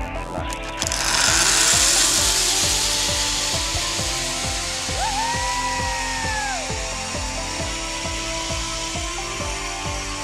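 Zipline trolley pulleys rolling along a steel cable as the rider launches: a whir that builds about a second in, is strongest for a couple of seconds, then eases off, with rushing air on the microphone. A single held high tone sounds about halfway through.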